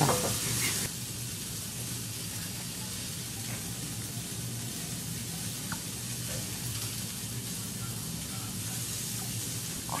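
Meat sizzling steadily in a frying pan, an even hiss that eases slightly about a second in.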